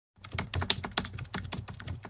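Computer keyboard typing: a rapid run of key clicks as a web address is typed into a search bar.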